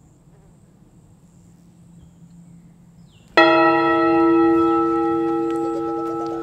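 A bell struck once about three seconds in, ringing on with a slow fade after a faint, quiet start.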